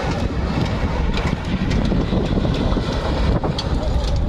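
Open-top off-road jeep engine running as it drives along a dirt track, with wind rumbling on the microphone.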